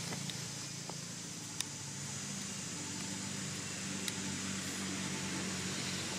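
A steady, low mechanical hum, like a distant engine running, with a few faint clicks.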